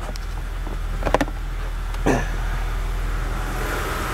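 Steady low hum inside a car fitted with Accuair air suspension, with a few sharp clicks about a second in. Near the end a hiss of air starts: the air springs being vented as the car is lowered from the remote.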